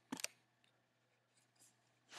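Near silence: faint room tone, with one brief click just after the start.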